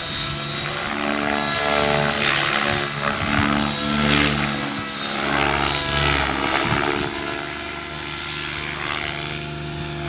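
Radio-controlled helicopter flying aerobatics: the rotor blades beat in a sound that swells and changes pitch as it manoeuvres, over a steady high whine from the drive.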